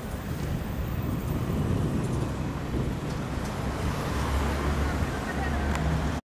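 Street traffic noise: a steady rumble of road vehicles, with a deeper engine drone coming in about four seconds in.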